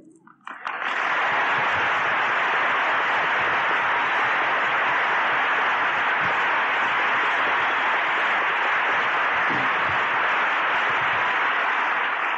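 An audience applauding. The applause swells in about a second in, holds steady and full, and eases off near the end.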